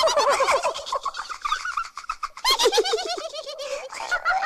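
A rapid, warbling gabble of bird-like calls made of quick falling notes, about ten a second, in two bursts; the second begins about two and a half seconds in.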